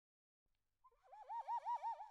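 Background music starting after a brief silence: about a second in, a whistle-like tone comes in, warbling quickly up and down in pitch and growing louder.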